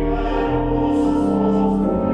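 Church pipe organ playing sustained chords while voices sing a hymn, in a reverberant cathedral.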